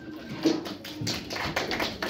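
Scattered hand clapping from a small group, a quick, irregular run of claps.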